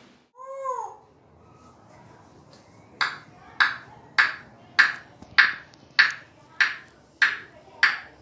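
African grey parrot gives a short whistle that rises and falls. About three seconds in, a steady run of nine sharp pings begins, evenly spaced a little over half a second apart, each with a short fading ring.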